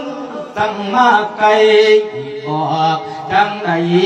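A Thai monk's male voice chanting a sermon in the melodic Isan thet lae style, in several phrases of long held notes that slide between pitches.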